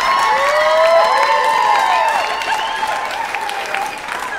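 Live comedy audience laughing and applauding, a burst of clapping mixed with many voices laughing, dying away toward the end.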